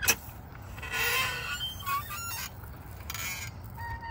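Ride-on playground sand digger being worked by hand: a click, then its metal bucket scraping through loose ground cover twice, with short squeaks from the arm's pivots, one near the middle and one near the end.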